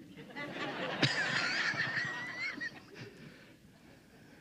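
A crowd of people laughing, with one high, wavering laugh rising above the rest for a second or two, then dying away.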